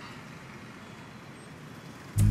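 Faint, steady outdoor background noise of distant road traffic, an even hiss-like haze with no distinct events.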